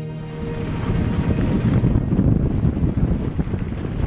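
Loud, gusting wind rush on the microphone of a vehicle driving fast across a salt flat, with the vehicle's road noise underneath, as if the camera is held out the open window. Background music fades out in the first moment.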